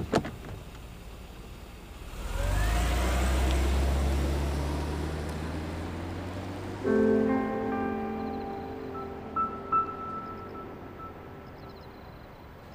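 A car pulls away: from about two seconds in its engine revs up with a rising whine and low rumble, then slowly fades as it drives off. Soft music with piano- and bell-like notes comes in about seven seconds in.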